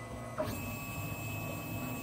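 Monoprice Maker Ultimate 3D printer's stepper motors moving the print head toward the back left corner of the bed during bed levelling. It is a steady whine with several high tones that starts about half a second in.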